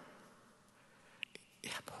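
A pause in a man's speech: quiet room tone as his voice fades away, two faint short clicks about a second in, then his voice resumes near the end.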